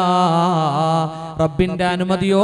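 A man's voice intoning through a stage microphone, holding one long drawn-out note with the vowel shifting, then breaking off about a second and a half in before his words pick up again.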